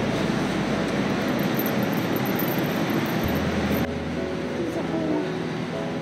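Steady background din of a large indoor hall with indistinct voices. About four seconds in the din drops and soft background music with held notes comes in.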